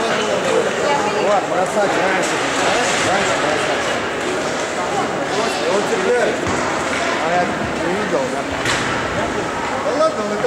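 Many high-pitched young voices shouting and chattering over one another in an ice arena, none clearly picked out. A single sharp knock comes near the end.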